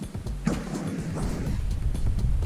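Background music, with a knock about half a second in.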